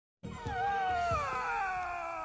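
A cartoon cat-girl character's long, cat-like yawn: one drawn-out voiced call that starts a moment in and slides steadily down in pitch.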